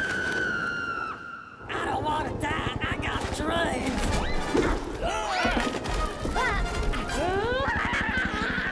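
A long held high cry that cuts off about a second in. After a short lull comes a frantic jumble of voices with swooping yelps, set over music, with crashing sounds.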